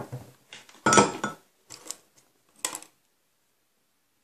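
Wooden popsicle-stick box being handled, knocking and clattering against a wooden desk: a few short clatters, the loudest about a second in.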